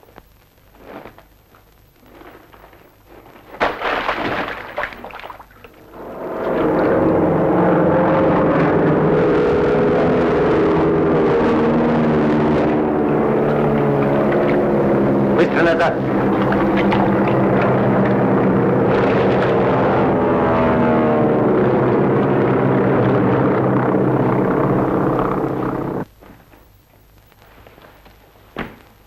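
Piston aircraft engines running in a steady drone that builds after a short burst of noise about four seconds in, then cuts off suddenly about two seconds before the end.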